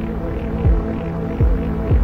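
Live electronic music: a sustained synthesizer chord drones under three deep electronic kick-drum hits, each dropping quickly in pitch, unevenly spaced.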